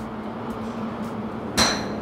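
A golf driver striking a ball about one and a half seconds in: a single sharp metallic crack with a short high ring, over a steady low hum.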